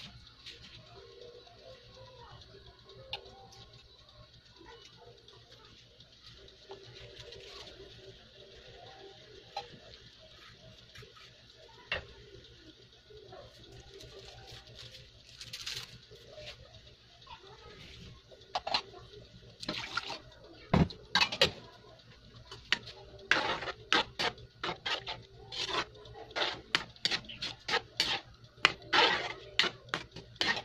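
Sauce simmering in a metal wok, with faint bubbling. In the second half comes a run of sharp clinks and scrapes of a metal ladle against the wok as the sauce is stirred, growing denser and louder toward the end.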